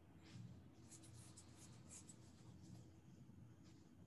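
Near silence: faint room hum with light scratching sounds.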